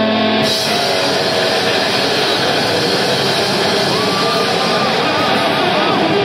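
Live metal band playing loud distorted electric guitars and drums. About half a second in, a held chord gives way to fast, dense full-band playing, with a wavering high note near the end.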